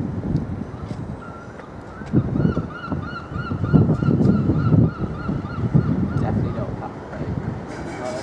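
Low, uneven rumble of a Class 202 'Thumper' DEMU's English Electric diesel engine as the train runs in, loudest in the middle. Over it, from about a second and a half in, a bird calls a fast run of about fifteen repeated notes, roughly three a second.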